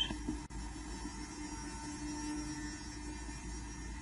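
Steady low electrical hum in the recording, with one faint click about half a second in.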